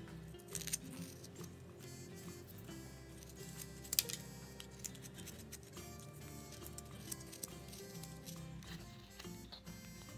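Background music with a steady run of notes, over it short sharp clicks and scrapes of a carving knife cutting into a hard, brittle basswood block. One click about four seconds in stands out as the loudest.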